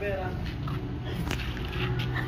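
Faint voices in the background over a low, steady hum.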